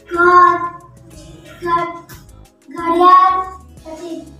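A child's voice singing three short phrases over background music.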